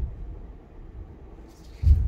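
Low room noise with a brief hiss, then a single dull, low thump near the end.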